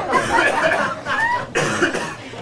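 Two short coughs among indistinct voices.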